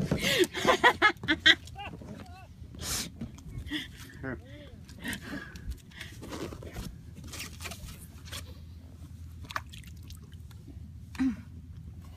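A man laughing in a quick run of loud bursts, followed by scattered short voice sounds and sharp clicks and knocks of handling.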